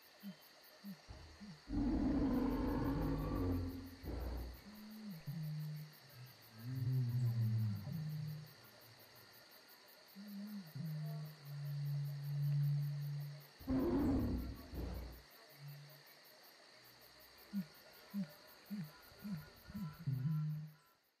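End-screen music with two loud animal-roar sound effects, one about two seconds in and a second about fourteen seconds in. Low held tones run under them, and short rising notes come near the end.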